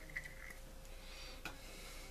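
Faint handling sounds while oil is applied from a small squeeze bottle to the pinion gear bearing of a Penn 450SSG spinning reel: a few light clicks and a soft hiss.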